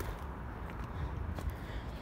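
Low steady outdoor rumble with a few faint knocks.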